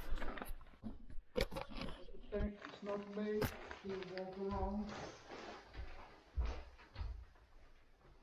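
Rustling, knocks and thuds of a large plastic shopping bag being handled and moved about. A man makes two drawn-out wordless voice sounds at a steady pitch in the middle.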